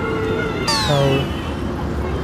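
A short meow-like call that falls in pitch about a second in, just after a quick downward sweep, over a steady background hum.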